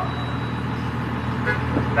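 Steady low engine rumble of an open-sided tour trolley driving along a street, heard from a passenger bench.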